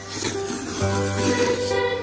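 Background music with plucked guitar. Over it comes a long, noisy slurp of instant noodles being sucked up, starting about a quarter second in and lasting over a second.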